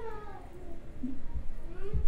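A person imitating a cat, with a drawn-out meow-like call that falls in pitch and a short rising call near the end. There are two soft low thumps, one a little past halfway and one at the end.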